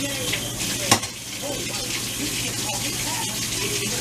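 Kitchen sink faucet running steadily while dishes are washed by hand, with a single sharp clink about a second in.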